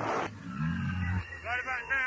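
Vocal samples in a hardcore rave mix: a deep, growling voice about half a second in, then a higher voice near the end, with the beat dropped out.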